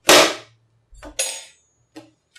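A loud, sharp smack that dies away over about half a second, followed about a second later by a softer, shorter noise.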